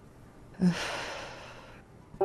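A woman's long sigh: a short voiced start, then a breathy exhale that fades away over about a second.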